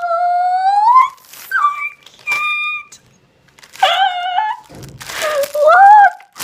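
A girl's excited wordless vocalizing: a long drawn-out "ooh" rising in pitch, then short high squeals, and another rising "ooh" near the end. Plastic packaging crinkles briefly in between.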